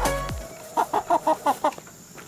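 Slow-growing white broiler chicken clucking: a quick run of about seven short clucks, starting about a second in, as background music fades out.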